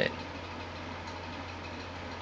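Steady low hum with an even hiss of background noise, unchanging throughout.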